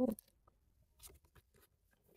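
Faint rustling and a few soft clicks of a paper journal being handled and opened, about a second in.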